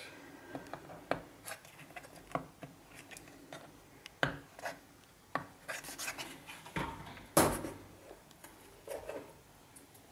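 Handling noises: scattered light knocks, clicks and rubbing as a plastic inhibitor bottle is moved around a plastic funnel, with one louder knock about seven and a half seconds in.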